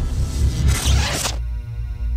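Logo-animation music with a low bass pulse and a swish sound effect that cuts off sharply about one and a half seconds in, leaving a steady held chord.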